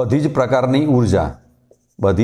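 A man's voice speaking for about a second, with a marker writing on a whiteboard.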